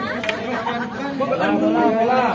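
Several people's voices talking and chattering at once, with no single clear speaker.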